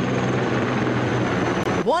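A Sikorsky S-64 Skycrane heavy-lift firefighting helicopter flying overhead: steady rotor and turbine noise with a thin, high, steady whine. It stops near the end as a voice comes in.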